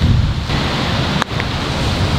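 Wind buffeting the microphone, a heavy low rumble throughout. A single short click a little past a second in, the putter striking the golf ball.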